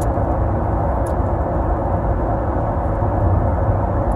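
Steady low rumble of engine and road noise inside a car's cabin.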